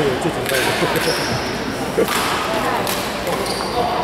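Busy indoor badminton hall: many voices chattering in the background, sneakers squeaking briefly on the court floor, and one sharp smack about two seconds in, the sound of a racket striking a shuttlecock.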